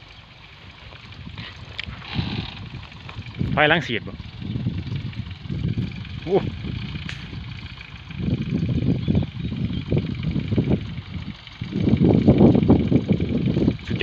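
Engine of a small homemade sugarcane-spraying tractor running as it drives across a plowed field, with a man's voice over it.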